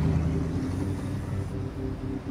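A low, muffled rumble under a softly pulsing pattern of short repeated notes, like a film score or sound-design bed.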